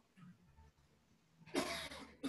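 A person coughs once, a sudden loud cough about a second and a half in, after a quiet stretch.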